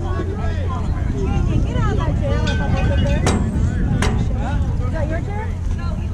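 Indistinct voices of people at a ball field, with no words made out, over a steady low rumble. A little past halfway come two sharp knocks, under a second apart.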